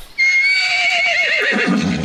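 A horse whinnying: one call of under two seconds that wavers and falls in pitch toward its end.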